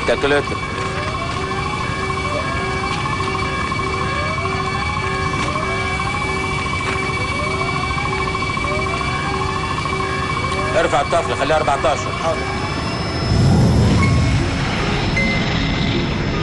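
Emergency alarm on an offshore oil rig sounding during a well blowout: a rising whoop repeating about every second and a quarter over steady tones. Brief shouting comes about eleven seconds in, and the loudest part is a low rumble near the end.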